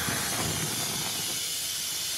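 Air hissing steadily out of an off-road vehicle's tyre valve as the tyre is let down to a lower pressure for driving in snow.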